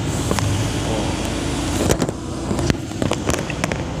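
Lorry engine running with a steady low hum heard from inside the cab, with a few sharp clicks and knocks from the phone being handled.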